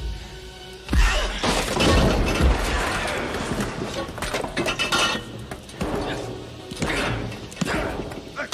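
Film fight-scene soundtrack: music under a run of heavy blows and body crashes, with something shattering. The loudest hit comes about a second in, and further sharp impacts follow a few seconds later as a man is thrown down onto pipes and the floor.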